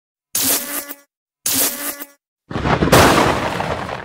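Intro sound effect over a logo card: two short pitched bursts of about two-thirds of a second each, then a louder, longer noisy rush that swells about half a second later and fades away.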